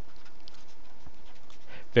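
Marker pen writing on paper: faint, scratchy strokes over a steady background hiss.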